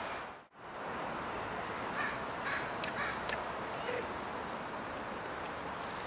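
Steady outdoor background noise with a few faint crow caws about two to three seconds in.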